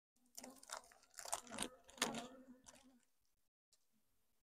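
Faint crinkling and crackling of a foil mite-treatment package being handled, with a few sharper crackles in the middle, over a faint steady hum.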